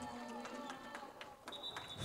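Faint gym background between commentary: quiet music with a murmur of voices, a few light knocks, and a faint steady high tone starting near the end.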